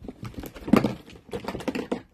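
Dense crackling and rustling handling noise as a green expandable fabric garden hose is lifted and bunched in the hands, with small clicks, loudest a little under a second in.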